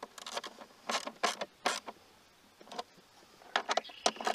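Irregular metal clicks and scrapes of a hand tool and terminal bolt hardware as battery cables are fitted and tightened onto the terminals of a 12V lithium battery, in clusters about a second in and again near the end.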